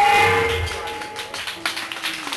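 A heavy metal band's final chord dying away, with a few held guitar feedback tones ringing on as the loudness falls. Several short sharp clicks in the second half.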